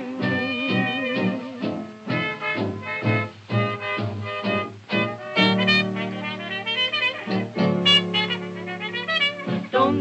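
1932 78 rpm record of a jazz dance band playing an instrumental break between vocal choruses: brass and saxophones over a steady swing beat, moving into long held chords in the second half.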